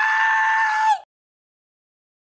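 A man's high-pitched scream, held on one steady note for about a second and cut off suddenly.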